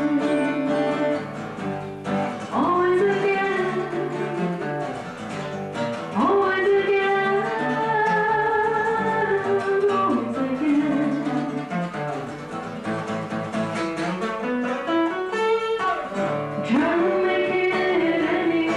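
A woman singing an original song in long, held notes, with a steel-string acoustic guitar played as accompaniment.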